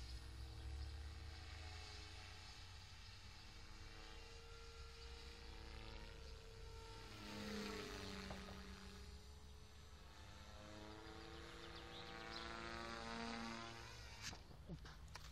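Radio-controlled model helicopter flying overhead, a faint whine of motor and rotor that slides in pitch and swells twice as it passes close, about halfway through and near the end. Wind rumbles on the microphone underneath.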